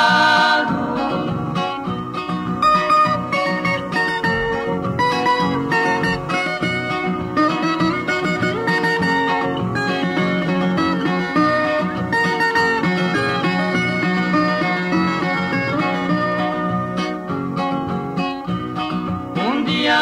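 Instrumental break in a Brazilian caipira cururu song: plucked guitars pick the melody between verses. A held, wavering sung note dies away in the first second.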